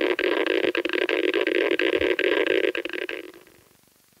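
Geiger counter crackling with a dense, rapid run of clicks as its probe is held to a chunk of uranium ore, a count rate that signals strongly radioactive ore. It fades out about three seconds in.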